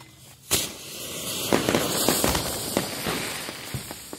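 A sharp pop about half a second in, then a dense, irregular crackling that carries on.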